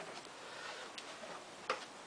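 A few faint clicks over quiet room tone, the clearest one near the end.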